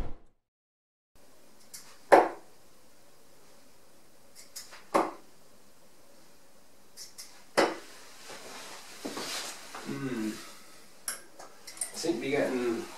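Harrows Elite 23g tungsten steel-tip darts thrown one at a time and striking the dartboard with three sharp hits about two and a half seconds apart, each with a light click just before it. Near the end a few quick clicks as the darts are pulled out of the board.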